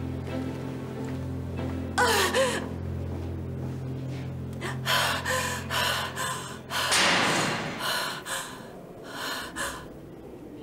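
A woman crying and gasping for breath in distress, with a wavering cry about two seconds in and a run of quick gasping sobs in the second half. Under it a low sustained music chord holds, then stops about seven seconds in.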